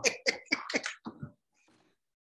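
A person laughing in a quick run of short breathy pulses that stops about a second in.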